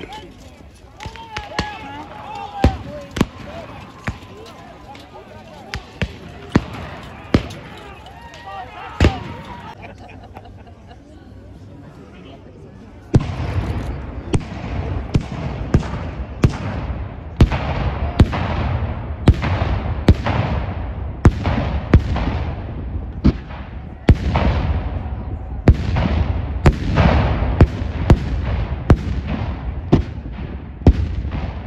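Black-powder muskets and cannon firing. Scattered single shots come first, then, about 13 seconds in, a steady run of echoing shots, more than one a second, with heavier cannon reports among them.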